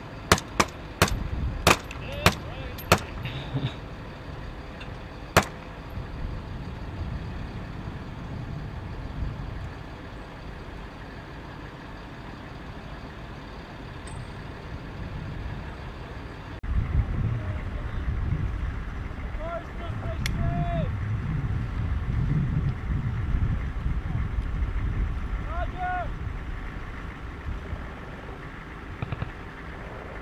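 Military Humvee diesel engine running with a steady low rumble. A quick series of about seven sharp cracks comes in the first five seconds, and the engine rumble grows louder from about 17 seconds in.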